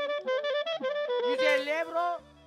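Clarinet playing a quick, ornamented melody of stepping and bending notes.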